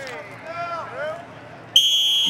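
An electronic buzzer sounds suddenly near the end, a loud steady high-pitched tone that is still going at the close. Before it, faint voices.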